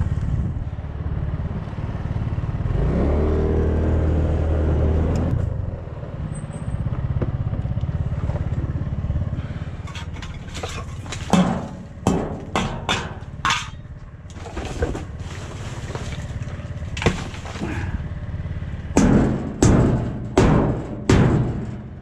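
Motorcycle engine running as it rolls slowly, its pitch rising and falling for a couple of seconds. About ten seconds in, sharp clanks, knocks and rustles as trash is rummaged through inside a metal dumpster and a metal cooking pot is pulled out.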